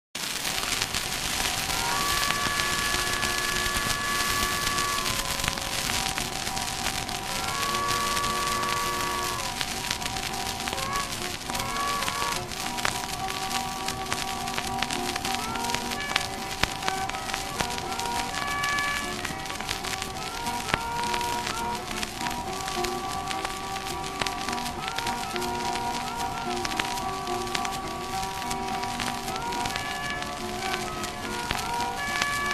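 Old acoustic blues on a 1924 shellac 78 rpm record: harmonica and guitar played without singing, under heavy surface crackle and hiss. Long held chords come about two seconds in and again about eight seconds in, then shorter notes follow.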